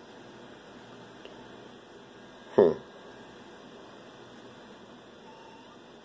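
Faint steady hiss, broken once by a man's short 'huh' about two and a half seconds in.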